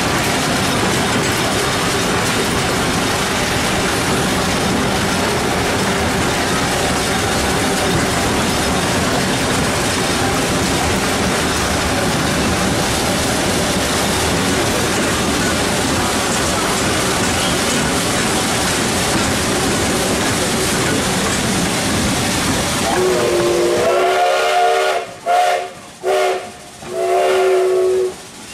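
A steady noisy rumble and hiss, then near the end a steam whistle blows three times with several tones sounding together. The first blast is the longest, and the other two follow after short gaps.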